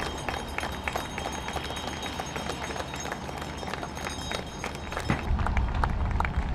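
Crowd clapping: many scattered, irregular hand claps over outdoor street noise. About five seconds in, a low rumble comes in beneath the claps.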